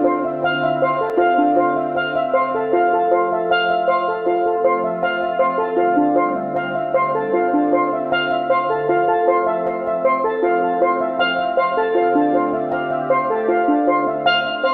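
Background music: a melodic tune of pitched instrumental notes over a held bass line.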